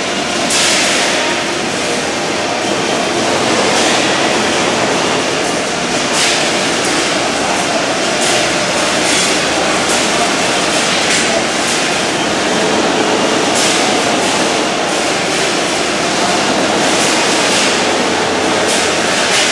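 Loud, steady running noise of factory production machinery, broken every one to three seconds by short, sharp high-pitched bursts.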